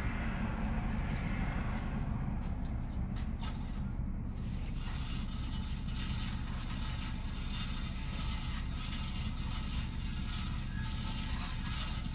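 2011 Chrysler Town & Country's V6 engine idling steadily, warmed up and running in closed loop. A few faint clicks come about two to four seconds in.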